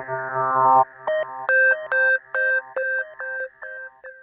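Background music: a held chord that stops just under a second in, followed by a run of short, evenly spaced chords about two a second, growing quieter toward the end.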